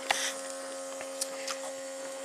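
Steady hum of a small battery-powered smoke machine's air pump (Autoline PRO Ventus) left running in air mode to keep a headlight housing under pressure for a leak test, with a few faint clicks from handling.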